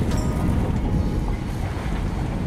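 Steady low rumble of a sailing boat's engine as it motors along, with wind noise on the microphone.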